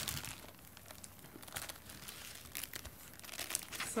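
Plastic sleeves of a spiral-bound display folder crinkling as the folder is handled and tilted: a scatter of soft, irregular crackles.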